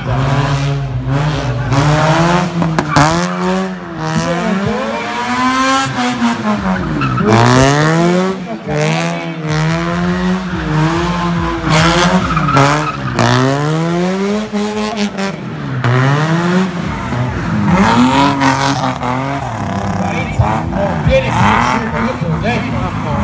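A drift car's engine revving hard, its pitch climbing and dropping again every second or two as the throttle is worked through the slides, with tyres squealing as the car drifts.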